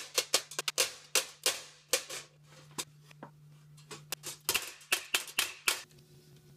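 Hammer driving a smooth, rounded cold chisel against a mild-steel helmet comb, setting it down into a crease: quick, irregular metal-on-metal blows, each with a short ring. The blows come fast for about two seconds, pause, then resume before stopping near the end.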